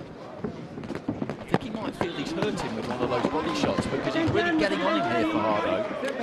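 Arena sound in a boxing hall: voices in the hall, heard most in the second half, with scattered sharp knocks from the action in the ring.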